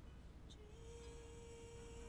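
Near silence: room tone, with a faint steady tone coming in about half a second in.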